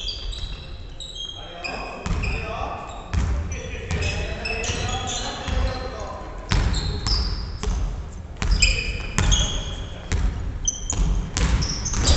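Basketball play on a wooden gym floor: sneakers squeaking in many short high chirps and the ball bouncing in sharp strokes, with players' voices calling out in a large hall.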